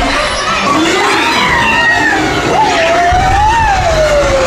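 Dark-ride soundtrack sound effect: a loud, wavering whistle-like tone that slides up and down, over a low rumble that swells near the end.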